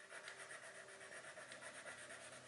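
Faint, quick back-and-forth strokes of a wax crayon rubbing on paper, colouring in lightly.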